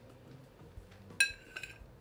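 A small metal spoon clinks sharply against a ceramic plate about a second in and rings briefly, followed by a lighter tap.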